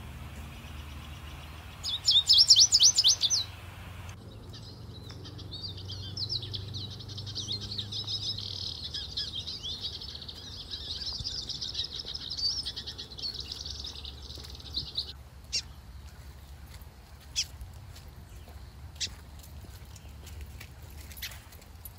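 Birds calling: a loud burst of rapid, falling high notes about two seconds in, then a long run of fast chattering notes lasting about ten seconds. A few short clicks follow near the end.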